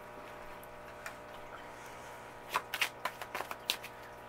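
Playing cards being handled: a quick run of light card flicks and snaps in the second half, over a faint steady hum.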